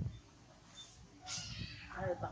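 A macaque's short, squeaky, mewing call near the end, after a quiet stretch.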